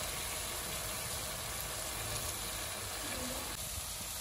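Diced chicken frying in a pan in its sauce, a steady sizzle.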